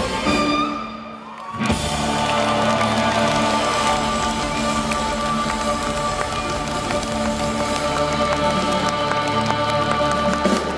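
Live rock band with a string orchestra: the music drops away briefly about a second in, then a long held final chord rings on, with audience applause and cheering over it.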